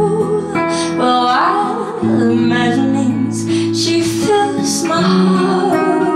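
A girl's singing voice with acoustic guitar accompaniment, the guitar's chords changing every couple of seconds.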